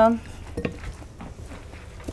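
Salad tongs lifting dressed salad out of a bowl, with a single light clink about half a second in.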